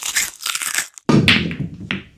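Cartoon sound effect: noisy crunching and crumpling in two bursts, the second starting about a second in.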